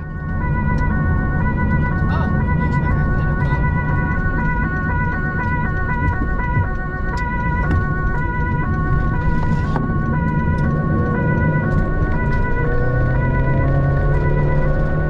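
Two-tone emergency siren switching back and forth between a high and a low note, heard from inside the responding vehicle over a steady engine and road rumble.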